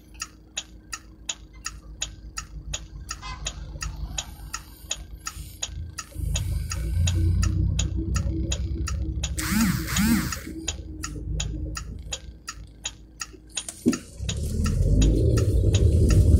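Car turn-signal indicator ticking steadily, about four ticks a second, heard inside the cabin. A low vehicle rumble swells from about six seconds in, and near the end it grows louder as the car pulls away.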